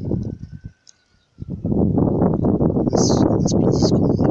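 Loud, gusty wind buffeting a phone's microphone on an exposed hilltop. It drops out for about half a second near the start, then comes back strongly and unevenly.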